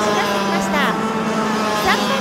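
Several junior racing kart engines running at high revs as the karts pass close together, their pitch sweeping up and down; sharp rises in pitch come about a second in and again near the end.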